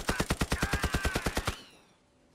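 Machine gun firing one long burst of rapid shots, about ten a second, that stops about a second and a half in.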